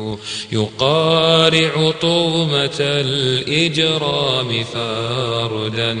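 An Arabic nasheed: voices singing long, wavering drawn-out notes over a steady low drone, with no words clearly sung.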